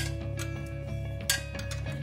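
Background music with a few sharp metal clinks from a ring spanner being fitted and worked on a motorcycle's rear axle nut: the loudest clink comes right at the start, and another comes about a second and a half in.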